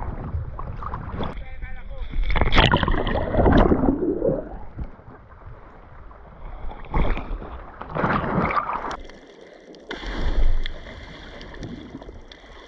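Sea water sloshing and splashing around an action camera at the water's surface, in uneven bursts with louder spells every few seconds.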